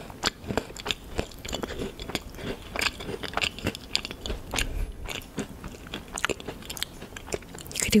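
Close-miked chewing of a macaron: irregular soft crunches and wet mouth clicks, several a second.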